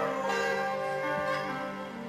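Instrumental background music: several sustained notes held together, slowly fading.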